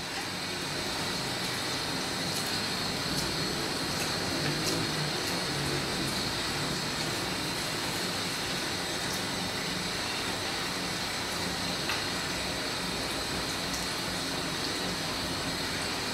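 Shampoo-bowl hand sprayer running, water spraying onto hair and into the sink basin as conditioner is rinsed out: a steady, even rush of water.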